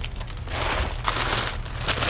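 Crinkling and rustling as vegetables are handled, a crackly noise that grows about half a second in.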